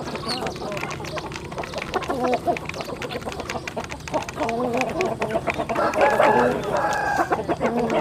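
A flock of chickens clucking as they feed, over many quick clicks of beaks pecking grain from a plastic trough. The clucking grows louder and busier about five seconds in.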